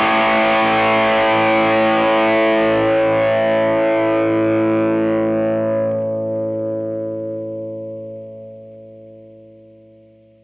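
Electric guitar chord through a Mooer Blues Crab overdrive pedal, most likely at full gain, into a Fender Blues Junior IV amp, ringing out with a long sustain. It holds steady for about five seconds, then fades away toward the end.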